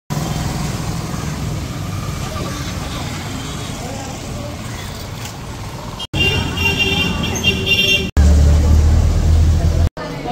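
Street traffic of motorbikes and cars: a steady low rumble, then a stretch of horn honking, then a louder low engine rumble near the end. Each part breaks off abruptly where the clips are cut.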